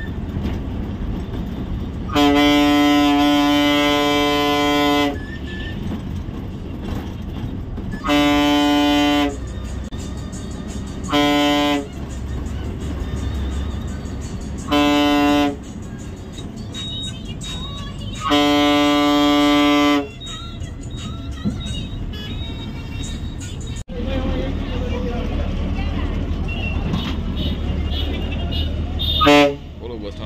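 Bus horn sounded five times: one long blast of about three seconds, then four shorter blasts, each a steady single pitch. Underneath runs the steady noise of the Ashok Leyland bus's diesel engine and the road.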